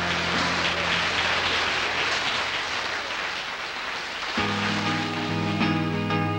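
Live band music: a held chord fades under a few seconds of hissing, cymbal-like noise, then an electric guitar starts strumming chords about four and a half seconds in.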